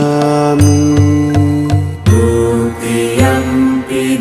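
Background music of long, held, chant-like notes over a steady low drone; a deep note pulses four times in the first half.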